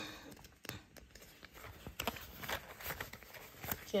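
Paper banknotes and clear plastic binder envelopes rustling and crinkling as they are handled, with scattered light clicks and taps.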